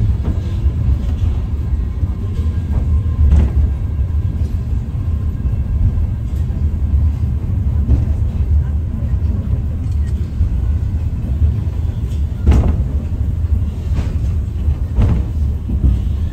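Steady low rumble of the Eizan Cable funicular car running along its track, heard from inside the car, with a few sharp knocks from the running gear.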